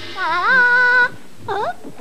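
A cartoon character's voice groaning after crash-landing on a wooden floor: one long wavering groan that levels off, then a short second groan about a second and a half in.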